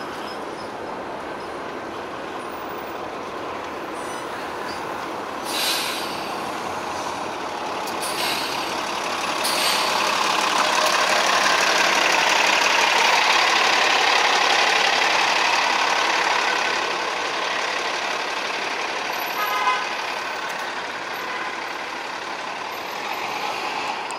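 A city bus passes close by: its engine and tyre noise swells to a peak about halfway through, then fades into steady street traffic. There is a short hiss about five seconds in, and a brief tone near the end.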